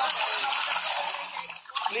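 Water churning and splashing from a piranha feeding frenzy around a bull's head as it is hauled up out of the river. The splashing dies away about one and a half seconds in.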